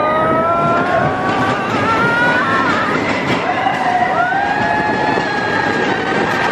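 Expedition Everest roller coaster train running along its track, rolling backward into the dark, with a loud steady rumble and pitched lines that glide upward and hold, which could be wheel whine or riders' screams.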